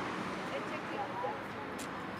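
City street ambience: indistinct, far-off voices over a steady wash of traffic noise.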